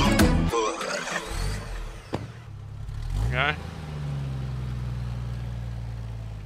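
Music cuts off about half a second in, and a car engine is heard. There is a rising rev about three seconds in, and the engine then settles into a steady low idle.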